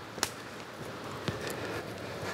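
Quiet footsteps and rustling on a damp, leaf-littered bush slope, with a sharp click a quarter second in and a couple of fainter ticks a second later, over a low steady hiss.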